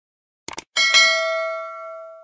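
Sound-effect click, two quick taps about half a second in, then a bell ding that rings out and fades over about a second and a half. This is the stock click-and-bell effect of a subscribe-button animation.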